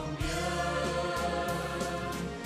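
Music with a choir singing held notes.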